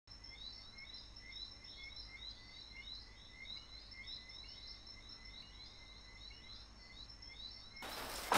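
Faint night-time ambience: a chorus of small, high chirps repeating several times a second over a low steady hum. It is cut into just before the end by a sudden loud burst of noise.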